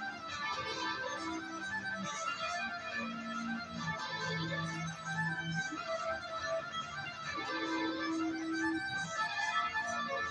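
Instrumental rock music with no vocals: a fast melodic lead line over held bass notes and chords.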